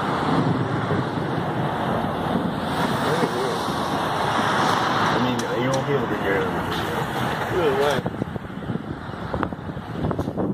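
Distant outdoor tornado warning sirens wailing through a steady rush of wind and traffic noise.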